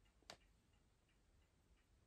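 Near silence: a clock ticking faintly and evenly, with one short, slightly louder click about a third of a second in.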